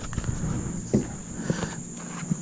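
A steady high drone of insects, with a few faint knocks and light rustling from handling.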